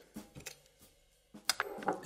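Knife tip working into the underside of a live East Coast sea urchin: a few faint clicks and crackles of shell, with one sharp crack about one and a half seconds in.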